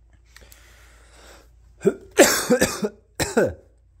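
A man coughing: a loud fit of coughs about two seconds in, then another cough a second later. Before it there is a faint rustle with a small click.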